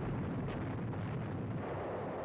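Aerial bombs exploding, heard as a continuous, steady rumble.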